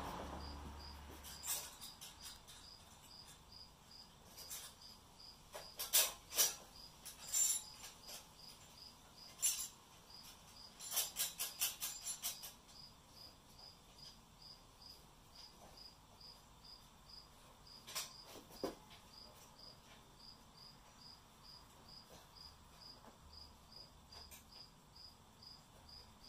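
Cricket chirping steadily, about two short chirps a second. Over it come sharp clinks and knocks of steel parts being handled, with a quick run of clicks about eleven seconds in.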